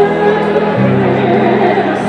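A woman singing through a handheld microphone, her voice wavering with vibrato over music accompaniment. The accompaniment's bass moves to a new note a little under a second in.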